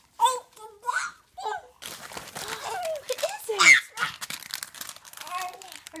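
A toddler squealing and babbling excitedly, with the crinkling of candy packaging and paper starting about two seconds in.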